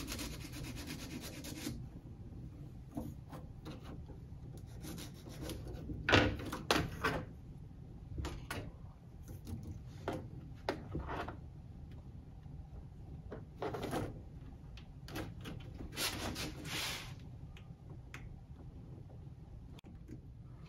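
A small file rasping a burr off the freshly cut end of an HO-scale flex-track rail, a quick run of strokes in the first two seconds. After that come scattered short scrapes and clicks as the flex track is handled and fitted at the joint, the sharpest about six seconds in.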